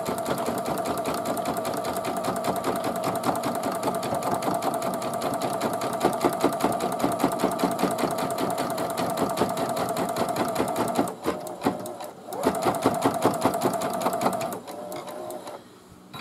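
Computerised embroidery machine stitching an applique outline into terry towelling: rapid, even needle strokes over a steady motor hum. It falters briefly about eleven seconds in, runs on, then stops a second or so before the end.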